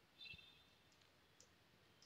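Near silence: room tone, with a faint short click about a quarter second in and another tiny click later.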